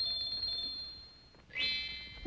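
High, bell-like tinkling chime: Tinker Bell's pixie-dust sound effect. A high ringing tone fades over the first second and a half, then a new shimmer of high ringing notes starts near the end.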